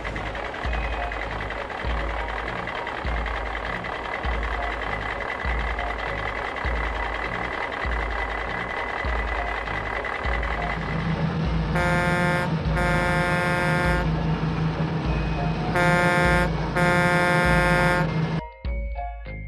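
Truck sound effect: a steady engine rumble, deepening about two-thirds of the way through. It is followed by a truck horn honking in two pairs of blasts, each pair a short blast then a longer one.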